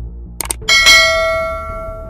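Subscribe-button sound effect: a quick double mouse click, then a bell ding that rings on and slowly fades.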